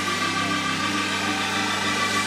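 Gospel worship music: a keyboard holds a steady sustained chord with no singing over it.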